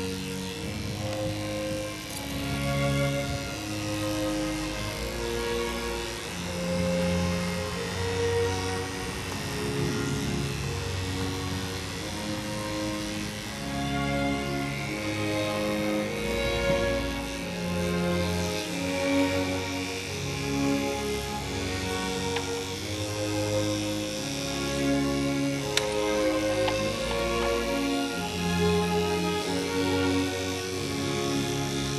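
Background music of held notes and chords, changing about every second.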